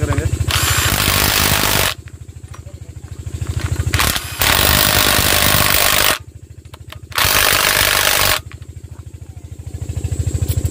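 18-volt cordless impact wrench with a socket, run in three bursts of a second or two, driving bolts home inside a Kirloskar AV1 diesel engine's crankcase. A steady low engine beat runs underneath.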